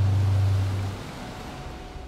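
Sea surf breaking and washing on rocks, with a low steady hum that stops about a second in; the sound then fades away.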